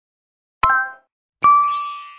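Sound effects for a subscribe animation. About half a second in there is a short click with a brief chime, then a louder bell ding rings out and fades near the end.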